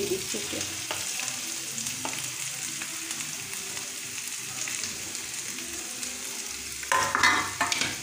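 Onions and mashed potato frying in oil in a pan, a steady sizzle. About seven seconds in, a spatula knocks and scrapes in the pan, louder for a moment.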